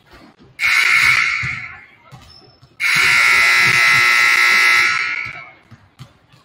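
Basketball scoreboard horn sounding twice: a short blast about half a second in, then a longer one of about two and a half seconds.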